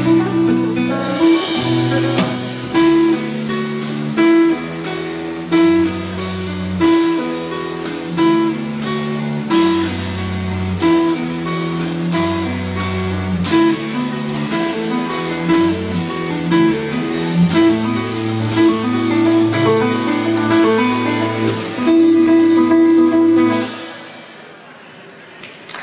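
Instrumental live band music: a fast plucked melody on a small lute over low bass notes and a drum kit, without singing. The music stops sharply near the end.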